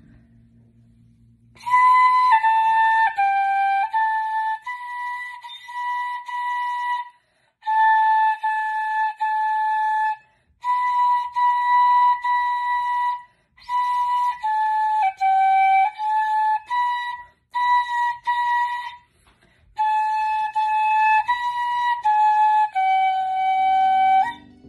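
A beginner playing a simple tune on a 響笛, a side-blown flute. The notes are separate, tongued and stay within a narrow range, grouped in short phrases with brief breaks, starting about two seconds in.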